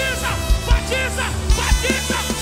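Live band music with a kick drum beating in pairs and a steady bass. Over it, a high, buzzy lead line bends up and down in short repeated phrases.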